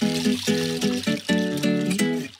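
Background music: a melody of short, evenly paced notes.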